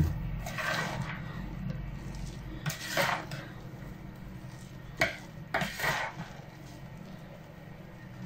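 Metal spoon scraping and tapping against a mixing bowl as stiff-beaten egg whites are folded into a soaked-bread mass: a few short scrapes, the loudest about three seconds in and at about five seconds.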